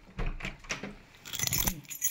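A bunch of keys jangling, loudest about one and a half seconds in.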